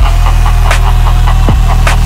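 Bass-heavy electronic dance music: a loud, constant low bass drone under kick drums that drop in pitch, with sharp snare hits falling between the kicks.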